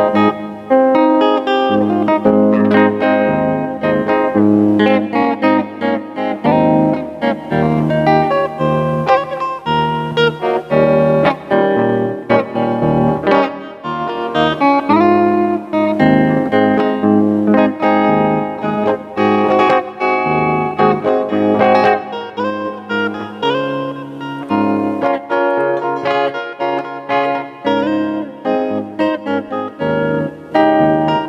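Solo Les Paul-style electric guitar played fingerstyle, a plucked melody over low bass notes, with a note bent upward about halfway through.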